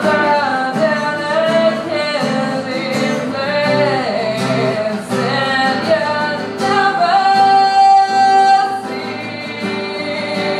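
A woman singing live while playing an acoustic guitar, holding one long note about seven seconds in.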